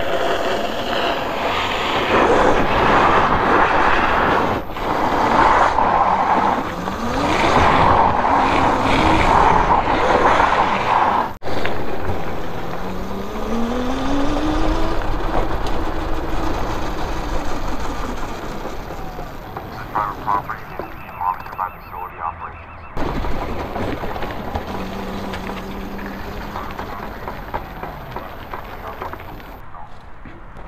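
Sur-Ron 72-volt electric go-kart under way, with a rushing noise of wind and tyres and a motor whine that rises in pitch as it accelerates, about halfway through. The sound breaks off abruptly a few times.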